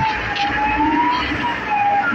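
A siren wailing, its single tone slowly rising and falling in pitch.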